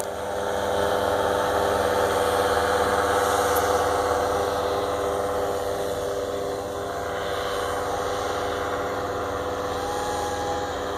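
Powered paraglider's engine and propeller droning steadily overhead, growing slightly fainter after about five seconds as it flies farther off.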